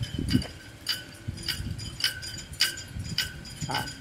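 Flagpole halyard ropes slapping against hollow metal flagpoles in a strong wind: irregular clinks and knocks with a metallic ring, roughly two or three a second, like a 'symphony' of 'dok dok' sounds. A low wind rumble on the microphone runs under them.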